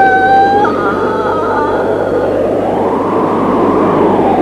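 Cartoon sound effect of a strong magic wind: a rushing gust that swells and peaks near the end. It opens under a loud, held, high wailing tone that steps to a different pitch under a second in and fades out.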